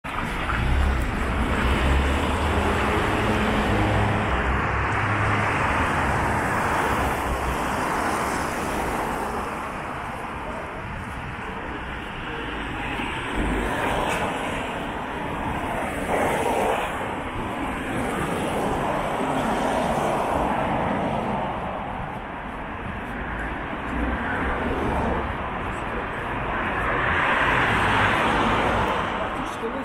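City street traffic: cars passing one after another, their tyre and engine noise swelling and fading, with a deep rumble in the first few seconds. Near the end the noise swells loudest as a trolleybus comes up the kerb lane.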